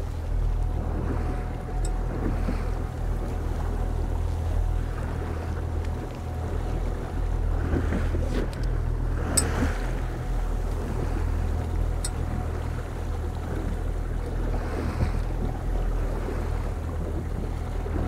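Small outboard motor running steadily at trolling speed, a steady low hum, with water washing around the hull and wind on the microphone.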